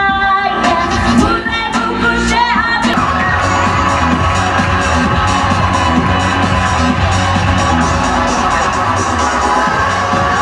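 A woman's held last sung note ends about half a second in. The karaoke backing track then plays on with a steady beat, with a few whoops from the audience in the first few seconds.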